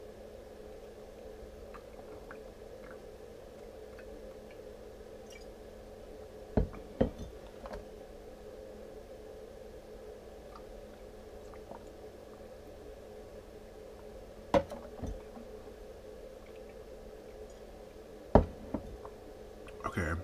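Glass water bottle and drinking glass knocking down onto a wooden tabletop between sips of water: three times, a pair of sharp knocks. A steady low hum in the room runs underneath.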